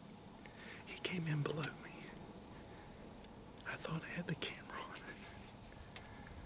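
A man whispering two short, hushed phrases, about a second in and again near the middle.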